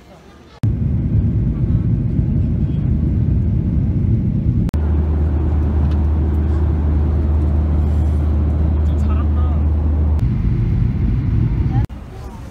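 Airliner cabin noise in flight: a loud, steady low drone of engines and airflow, changing abruptly in character twice.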